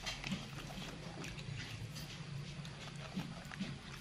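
A young macaque nibbling and chewing a snack: small, irregular clicks and crunches of eating, over a low steady hum.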